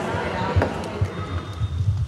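Soft low thumps and knocks, several close together near the end, with faint voices underneath.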